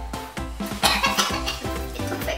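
A woman coughing, with the strongest cough about a second in, over background music with a steady beat.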